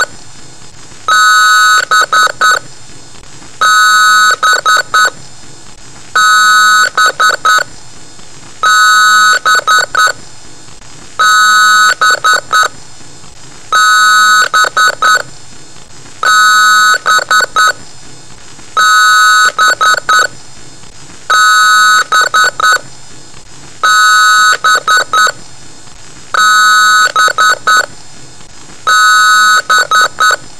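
Electronic beeps in a repeating pattern: a long, loud beep and then a quick run of three or four short beeps, over and over about every two and a half seconds.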